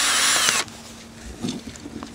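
Cordless drill with a small 7/64-inch bit running in a short burst that stops a little over half a second in, its motor whine wavering slightly.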